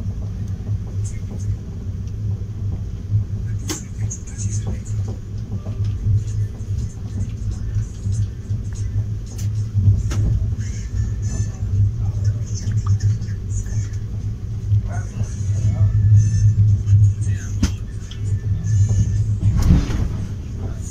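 Passenger train running slowly through a station: a steady low rumble with scattered clicks and knocks from the running gear, and faint indistinct voices behind it.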